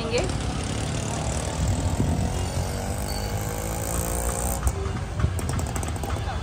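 Busy street ambience: a steady low rumble of motor traffic with the background chatter of a crowd.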